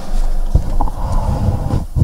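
Handling noise on a gooseneck lectern microphone as a cloth is rubbed over its head: loud, irregular rumbling scrapes, with a knock about half a second in and another near the end.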